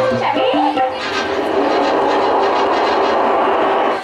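Music: a brief voice at the start, then a dense, steady wash of sound that runs on until dialogue resumes.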